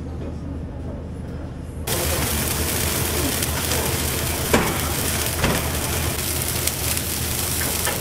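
After about two seconds of quieter room murmur, a pan of mussels and greens sizzles and bubbles hard in its liquid over a high gas flame, with a couple of sharp metal clinks from the pans.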